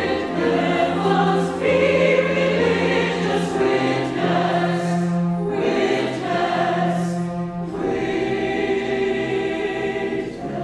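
Mixed choir singing slow, held chords over a sustained low cello line, with short breaks between phrases.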